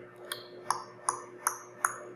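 Five evenly spaced, sharp ringing metallic ticks, about two and a half a second, like a ticking countdown while the answer is awaited.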